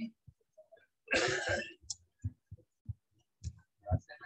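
A single short cough close to the microphone about a second in, with a few faint low knocks before and after it.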